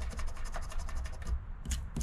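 Round metal scratcher scraping the coating off a paper scratch-off lottery ticket in quick, rapid strokes, stopping about a second and a half in, then a couple of short single scrapes near the end.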